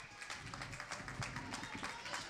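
Scattered hand clapping from spectators in an ice rink, a quick, uneven run of sharp claps after play is whistled dead.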